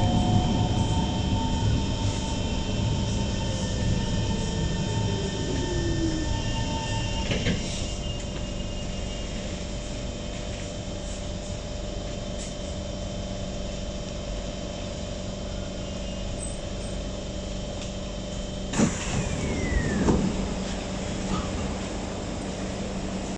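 Kawasaki C151 metro train's traction motors whining as it brakes into the station, one tone falling in pitch, until it stops with a knock about seven seconds in. The steady hum of the carriage's ventilation follows while it stands. Near the end come a loud sudden knock and a brief falling squeal.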